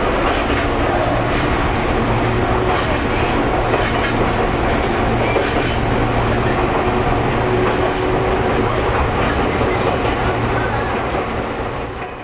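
Inside a moving Nagoya Railway electric commuter train: a steady running hum with the wheels clicking now and then over the rail joints, fading out at the very end.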